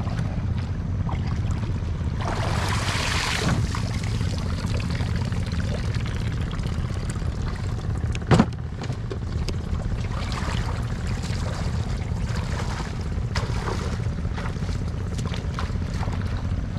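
Water sloshing and splashing as a plastic fish crate is lifted out of shallow water and carried, then one sharp knock about eight seconds in as the crate meets the wooden boat, with a few lighter knocks later. A steady low rumble lies underneath.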